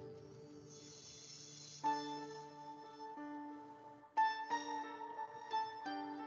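Quiet background music from an animation soundtrack: soft sustained notes, with new chords struck about two seconds in and again about four seconds in.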